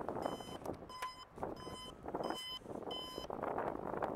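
An electronic warning beeper sounds five short, evenly spaced beeps, a little more than one a second. Wind and street noise run underneath.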